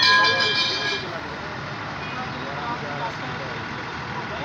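A vehicle horn sounds one steady note for about a second, then gives way to the steady road and engine noise of a moving bus with voices faintly underneath.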